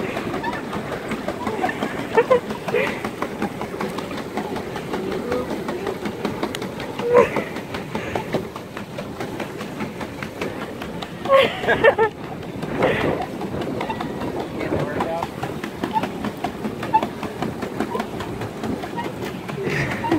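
Pedal boat being pedalled: a continuous rattle of the pedal drive and paddle wheel, with many small clicks, as the paddles churn the water.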